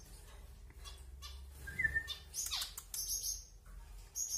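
Small cage finches chirping: a short whistled note about two seconds in, then several sharp, high chirps, some sliding down in pitch, in the second half.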